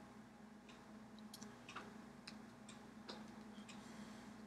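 Near silence: a steady low hum with scattered, irregular faint clicks and taps from a person signing in sign language.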